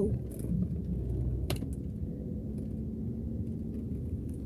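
Low steady rumble of a car moving slowly, heard from inside the cabin, with a single sharp click about a second and a half in.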